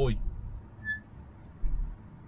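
Low rumble of a 4x4 heard from inside the cab as it drives over a rough grass field, with a heavy thump near the end. A brief high-pitched squeak from the vehicle sounds about a second in.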